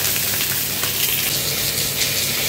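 Pieces of fish shallow-frying in hot oil in a wok, sizzling with a steady, dense hiss.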